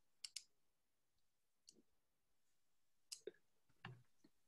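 Faint computer mouse clicks over near silence: a pair of quick clicks near the start, a single soft click in the middle, and another pair with a further click in the last second.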